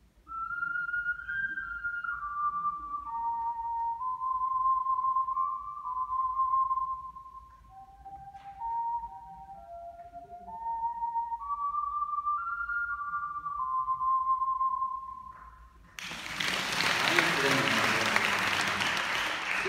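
Solo ocarina playing a short, slow melody of held, pure notes in a high register. It ends about 15 seconds in, and audience applause breaks out about a second later.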